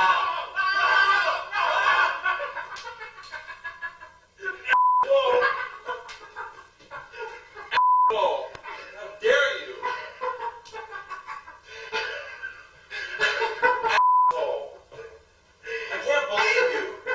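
Men yelling and laughing loudly after a sudden fireball scare, cut three times by short steady beeps that bleep out words.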